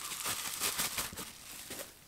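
Packaging crinkling and rustling as the solar spotlight is handled during unboxing, a faint run of irregular small crackles.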